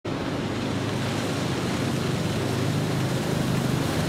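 Fire boat running fast across open water: a steady low engine drone under the rush of water, spray and wind.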